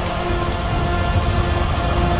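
Soundtrack of an animated scene: a dense, steady rushing noise with sustained music tones held over it.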